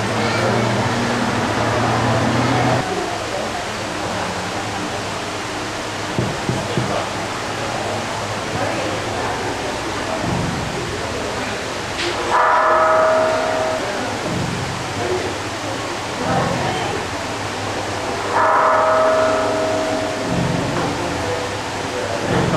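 Indistinct murmur of a crowd of people talking, with two short pitched tones sounding just past halfway and again near the end.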